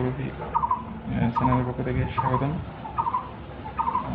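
A bird calling again and again, a short quick chirp repeated about every second.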